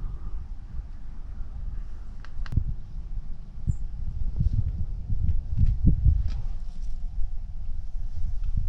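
Wind buffeting the camera microphone, a gusty low rumble that swells and drops, with a few sharp clicks, one about two and a half seconds in.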